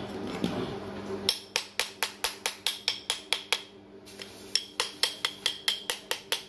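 Rapid metallic tapping, about five knocks a second in two runs with a short pause between them: a metal tool knocking on a car starter motor's housing to free a stuck part.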